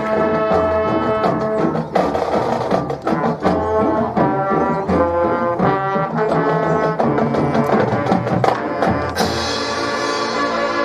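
High school marching band playing: brass chords and moving lines over drums and percussion, with a sudden bright crash just after nine seconds.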